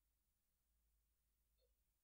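Near silence: a pause in a screen-recorded narration, with only a faint low hum.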